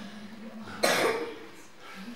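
A single sharp cough about a second in.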